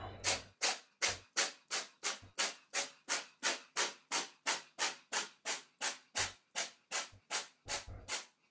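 Steam locomotive chuffing in a steady rhythm: evenly spaced hissing exhaust beats, a little under three a second.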